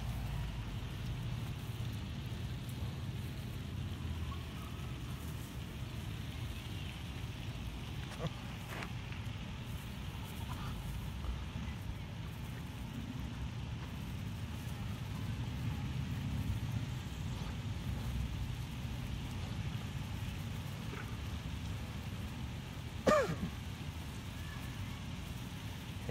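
Steady low outdoor background rumble, with one short pitched sound a little before the end.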